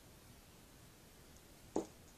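A single short knock near the end of a glitter jar being set down on the tabletop, over faint steady room hiss.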